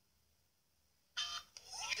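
Dead silence for just over a second, then a short blip and a voice starting near the end.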